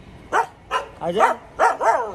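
Street dogs barking, about five short barks in under two seconds, the last ones coming quicker.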